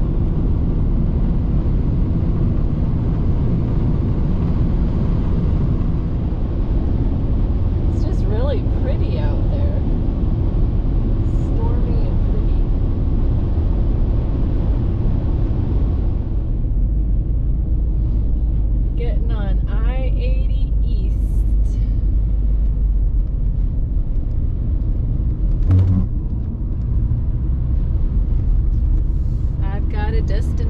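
Steady low road and engine rumble heard from inside a car driving on a highway, with a hiss of wind and tyre noise that falls away about halfway through. A single brief knock comes near the end.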